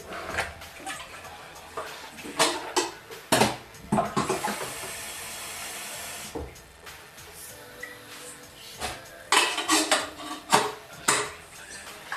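Crockery and cutlery being handled: a run of clinks and knocks, with a steady hiss lasting about two seconds in the middle.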